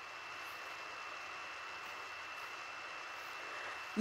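Steady, even background hiss with a faint, thin high-pitched whine running through it, and no distinct events.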